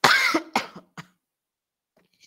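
A person coughing three times in quick succession, the first cough the loudest and longest, all within about the first second.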